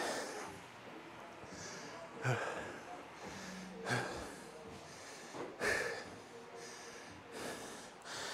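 A man breathing hard after a strenuous set of dumbbell curls, with four heavy exhalations less than two seconds apart.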